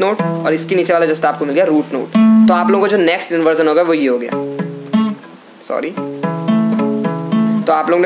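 Steel-string acoustic guitar (Yamaha F310) picking the notes of a triad shape one after another. In the second half the notes ring out and step from one pitch to the next, with talking over the guitar before that.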